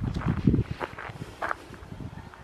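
A horse grazing: irregular crunching of grass being torn and chewed, densest in the first half second and then thinning to a few short crunches.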